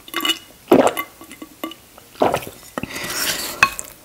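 Close-miked swallowing as hot sauce is drunk from the bottle, then a wooden spoon scraping and scooping shepherd's pie in a ceramic bowl, with a sharp click near the end.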